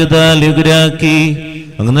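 A priest chanting a Malayalam prayer of the Syro-Malabar Mass on one steady held pitch, breaking off briefly about one and a half seconds in and then resuming.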